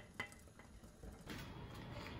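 A wire spider strainer stirring a stockpot of seafood boil, clinking once sharply against the pot near the start, then a few fainter scrapes. A faint steady hiss follows for the second half.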